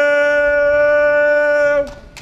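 A man singing one long, steady held note on the final word "too" of the song, which cuts off abruptly near the end.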